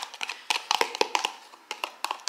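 Light, irregular clicks and taps from handling a container of homemade ranch dressing as it is poured over a salad in a glass bowl, thinning out near the end.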